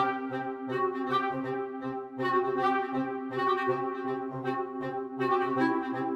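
Sampled orchestral woodwind sections from the Kinetic Woodwinds library playing a rhythmic motion-engine pattern. Short low notes repeat about four times a second under chords in the higher woodwinds, and the harmony shifts about a second in, again after two seconds, and again near the end.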